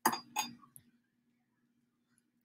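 Two sharp clinks of small hard objects striking each other, a little under half a second apart, over a faint steady hum.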